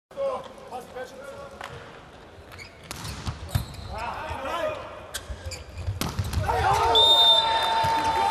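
Indoor volleyball rally in an arena: the ball is struck sharply several times, and sneakers squeak on the court. Crowd noise grows louder in the last couple of seconds as the point ends.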